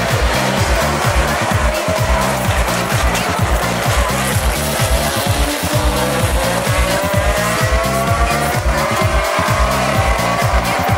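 Background music with a steady beat over a pack of GT race cars accelerating through a corner, their engine notes rising in the second half.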